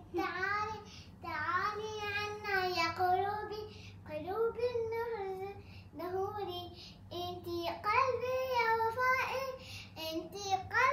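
A child singing a song without accompaniment: held, gliding notes in phrases of a second or two, with short breaks between them.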